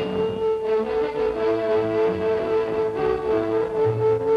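Cartoon sound effect of a struck magic tuning fork: one strong, steady, unbroken tone, with a brief high ring as it begins. Beneath it runs orchestral string music with short pulsing notes that change pitch.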